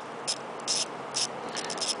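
A hand tool loosening the ignition coil's mounting bolts on a small single-cylinder engine: a few short, faint metallic clicks about every half second, coming quicker near the end, over a steady hiss.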